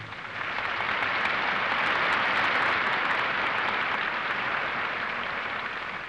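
Large theatre audience applauding, building over the first second and then slowly easing off.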